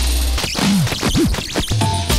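Electronic club music played in a live DJ set: the bass drops out about half a second in, leaving quick swooping pitch glides like scratching, and the low bass line returns near the end.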